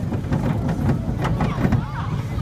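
Family rollercoaster train rumbling along its track, with a quick run of clacks from the wheels over the rails, about three a second.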